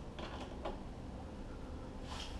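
A screw being turned by hand into a canopy pole's mounting bushing: a few faint creaks and clicks in the first second, then a low steady hiss.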